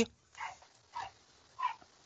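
A dog shut in a kennel barking three times, short and faint, about half a second apart.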